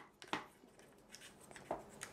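A few faint clicks and knocks as the plastic end jaw of an Irwin Quick-Grip bar clamp is fitted onto the far end of its bar, reversing the clamp into a spreader.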